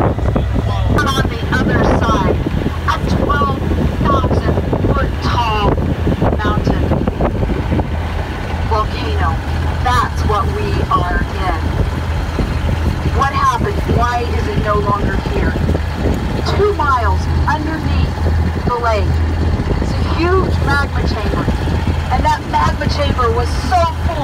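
Tour boat's engine running with a steady low hum, while a guide talks continuously over it.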